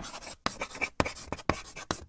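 Dry-erase marker writing on a whiteboard: a run of short strokes with brief gaps between them.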